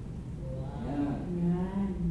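A man's voice drawing out a held, wordless 'uhh' or hum lasting about a second, starting near the middle and holding one pitch to the end, over a low steady room hum.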